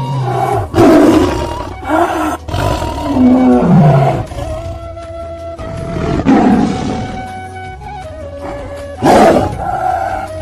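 A tiger roaring and growling in about five separate calls: one about a second in, two more around two to four seconds in (the longer one sliding down in pitch), one around six seconds and one near the end. Background music with long held notes plays underneath.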